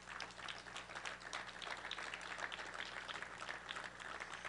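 Audience applauding, faint and steady, with a low hum underneath.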